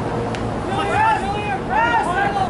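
Distant voices shouting and calling across a soccer pitch during play, over a steady rush of wind on the microphone, with one sharp tick about a third of a second in.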